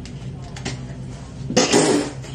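A woman's short, breathy exhale about one and a half seconds in, over a low steady hum.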